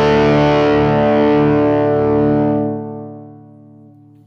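A sustained, distorted electric guitar chord from a Line 6 Variax played through a Helix rings out, then is faded down with the volume pedal from about two and a half seconds in, leaving a quiet ring.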